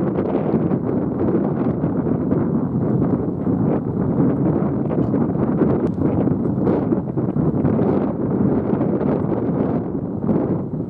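Wind blowing across the camera microphone: a steady, loud, rushing buffet with no clear tone in it.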